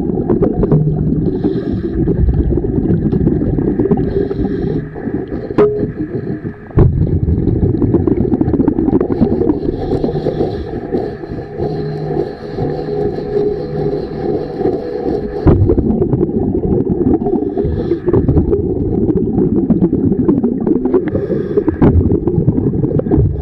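Diver scrubbing marine growth off a boat hull underwater: a continuous low scraping and rumbling heard through the water, full of small clicks, pausing briefly about six seconds in.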